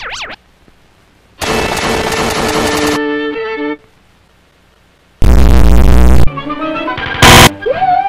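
Chopped, distorted cartoon soundtrack audio cut into loud bursts with silent gaps. A dense, noisy burst of music about one and a half seconds in ends in a few held notes. Around five seconds in comes a very loud blast with heavy bass, then a short blast near the end, followed by sustained wavering tones.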